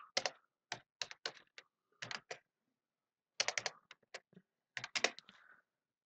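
Computer keyboard typing: short runs of keystrokes with a pause of about a second midway.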